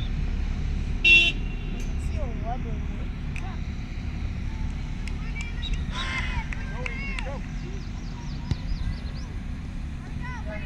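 Distant shouts and calls from players and spectators at a youth soccer game over a steady low rumble, with one short, loud, shrill whistle blast about a second in, typical of a referee's whistle.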